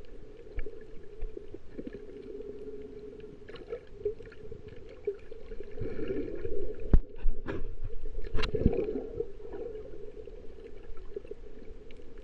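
Muffled underwater sound picked up by a camera held just below the surface while snorkelling: a steady low water rumble, growing louder in the middle with a few sharp knocks and clicks.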